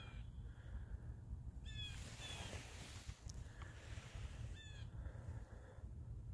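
Faint distant bird calls over a low steady rumble: a short call falling in pitch about two seconds in, a fainter one just after, and another short falling call near five seconds.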